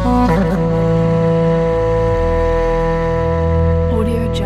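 Duduk holding a long, sustained note in a slow, sad melody, with a quick ornamental turn just after the start and another near the end. Low sustained string backing plays underneath and changes chord about halfway through.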